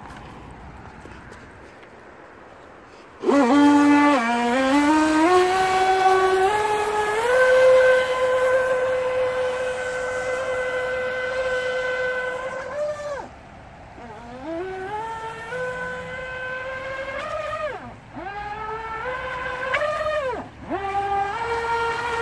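RC jet boat's motor whining. It starts abruptly about three seconds in, rises in pitch as the boat speeds up, and holds a steady high whine at speed. Then it drops and climbs again several times as the throttle is eased off and opened up.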